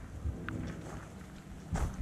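Low, steady rumble of wind buffeting a small action-camera microphone outdoors, with a faint background hiss and a brief high blip about half a second in.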